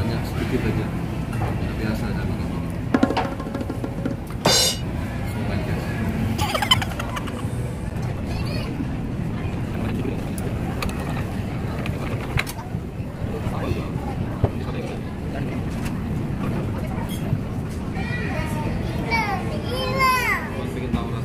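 Busy restaurant ambience: a steady murmur of voices with background music, broken by a few sharp clicks or knocks, the loudest about four and a half seconds in. A high voice rises and falls near the end.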